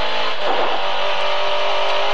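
Lada 2107 rally car's four-cylinder engine running hard, heard from inside the cabin, with a steady note and a brief rough patch about half a second in.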